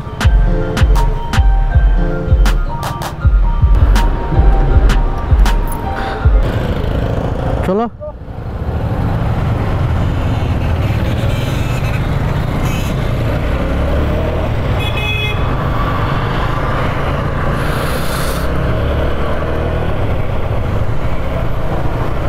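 Background music with a steady beat for the first eight seconds, ending in a rising sweep. Then the steady sound of riding a motorcycle in traffic: engine hum with wind and road noise, and a brief horn toot about fifteen seconds in.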